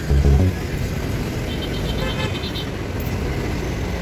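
Steady traffic noise from a busy road, with a brief faint high tone near the middle.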